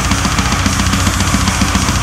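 Melodic death metal recording: distorted guitars over a drum kit, with a fast, even kick-drum pattern of about seven or eight strokes a second.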